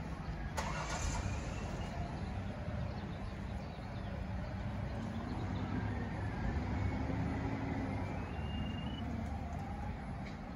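A handheld sewer-camera line locator sounding a faint tone that steps up in pitch near the end as it picks up the buried camera's signal, over a steady low outdoor rumble, with a brief burst of noise about half a second in.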